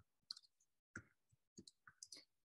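Faint computer keyboard keystrokes: a few irregular taps as a title is typed.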